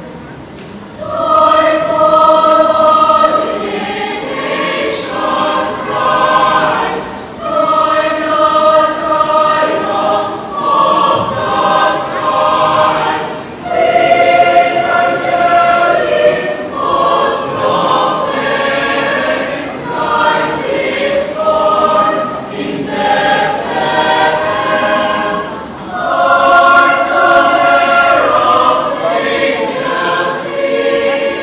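Youth choir singing in sustained, swelling phrases, coming in strongly about a second in.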